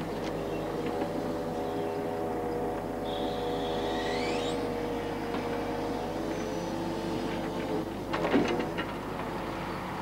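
Hydraulic loader crane on a log truck working, with the steady drone of the engine-driven hydraulic pump. A rising whine comes about three seconds in, and there are a couple of knocks near the end.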